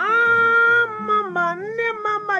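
A singing voice comes in loudly on a long held high note, then glides down and moves on through a melody, over a continuing plucked-guitar accompaniment.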